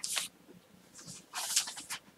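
Sheets of paper rustling as they are handled, in two short bursts: a brief one at the start and a longer one a little over a second in.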